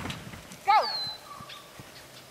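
Dog barking once, a short high yip about two-thirds of a second in. A bird's thin falling whistle follows it.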